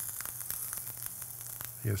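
New York strip steak searing in a hot pan, a steady sizzle with scattered fine crackles, over a low steady hum.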